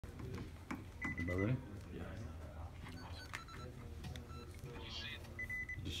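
Low voices and handling noise in a small room, with a short high electronic beep about a second in and another near the end.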